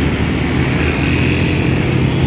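Small motor scooter engine running as it approaches along the road, over a steady hum of street traffic.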